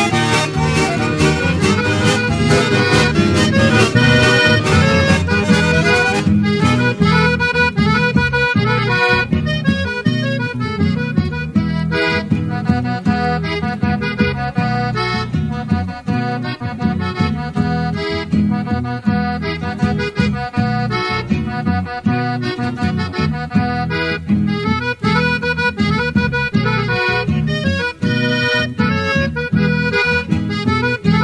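Brazilian accordion (sanfona) music with a steady rhythmic beat. The music changes about six seconds in, as one track gives way to the next.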